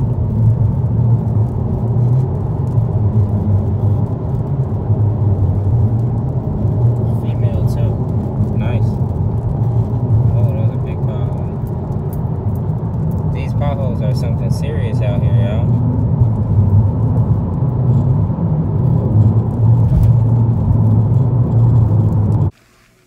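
Mercedes-Benz car cruising at highway speed, heard from inside the cabin: loud, steady road and wind noise with a deep rumble.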